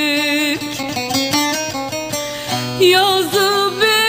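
A Turkish song: a long sung note with vibrato ends about half a second in, a plucked string instrument plays a short run of notes, and the voice comes back in near the end.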